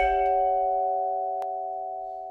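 A chord struck on a vibraphone, its metal bars ringing on and slowly fading, with a faint click about one and a half seconds in.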